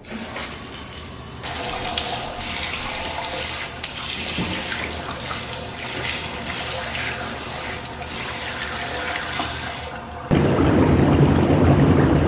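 Bathtub faucet running, water splashing into an empty tub, getting fuller about a second and a half in. About ten seconds in it changes to a louder, deeper rush of water pouring into a tub full of bubble bath.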